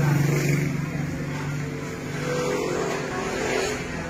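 A motor vehicle's engine running with a steady low hum, loudest near the start and easing off after.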